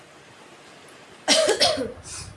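A person coughing, two quick coughs a little over a second in, loud against a quiet room.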